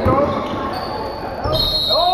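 Basketball game in a gym: the ball thudding on the court floor, with spectators' voices shouting and echoing in the hall.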